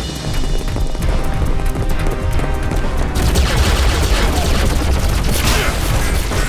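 Cartoon action soundtrack: dramatic music under a rapid barrage of shot and blast sound effects. It grows denser and a little louder from about halfway.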